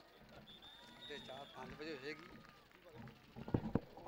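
Faint background voices of people talking at a distance, with two short thumps about three and a half seconds in.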